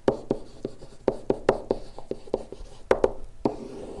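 A pen stylus writing on an interactive whiteboard surface while the words "Quotient Rule" are handwritten: a string of short taps and strokes, about four a second.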